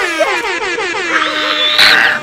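Young women's high-pitched, wavering squealing and laughing, ending in a short breathy shriek.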